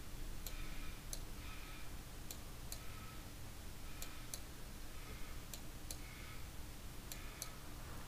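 Faint, scattered clicks of a computer mouse, at irregular spacing of about one or two a second, over a low steady background hiss.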